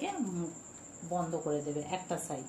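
A woman's voice speaking a few short words, over a steady high-pitched tone.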